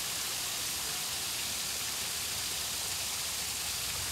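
Steady, even hiss of radio static at an unchanging level, starting abruptly at a cut.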